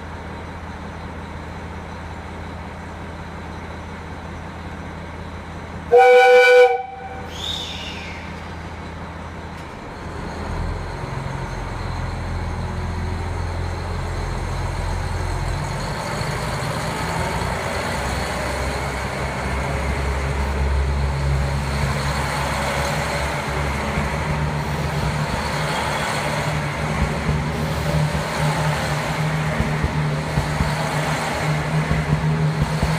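KiHa 261 series diesel railcar idling, then one short, loud horn blast about six seconds in. From about ten seconds in its diesel engines throttle up and the train pulls away past the platform, its running noise growing louder.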